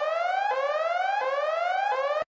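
Electronic whooping alarm siren of a novelty 'wife calling' ringtone: a tone that rises in pitch, snaps back down and rises again, about three whoops in two seconds.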